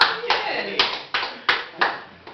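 Hands clapping in time, about six claps at roughly three a second.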